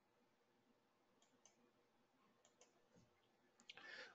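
Near silence with a few faint, short clicks, in two quick pairs and then a small cluster near the end.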